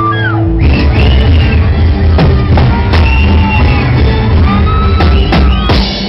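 A live band playing loud through a PA: held keyboard chords, then drums and heavy bass come in just over half a second in, with a voice calling out over the music.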